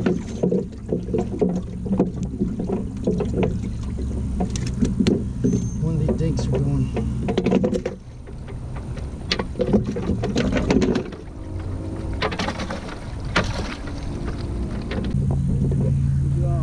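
Boat motor running steadily at idle, with indistinct voices over it and a few sharp knocks on the boat about twelve to fourteen seconds in as a caught bass is handled on the deck.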